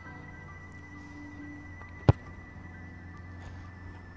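A rugby ball place-kicked off a tee: one sharp thud of the boot striking the ball about two seconds in. Soft background music with held notes plays throughout.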